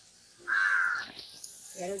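A single harsh bird call about half a second in, lasting about half a second. A woman's voice follows near the end.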